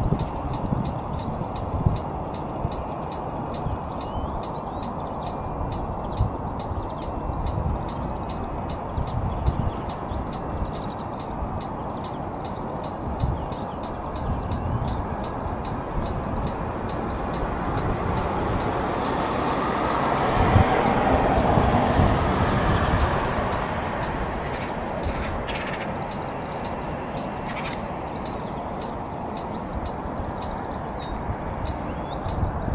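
Wind buffeting the microphone, with gusty low rumbling throughout. About two-thirds of the way through, the rumble of a passing vehicle swells to the loudest point and fades over several seconds.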